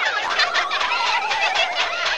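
High-pitched cartoon character voices chattering and warbling in quick up-and-down chirps, with a long wavering warble that falls in pitch through the middle, like a gobble.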